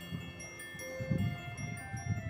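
Soft background music of chime-like, bell-like tones. Single notes at several pitches ring out one after another and hold.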